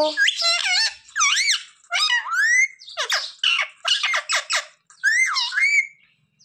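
Rose-ringed parakeet calling: a run of high, squeaky chirps and whistles that sweep up and down in pitch, in quick bursts with short gaps between them.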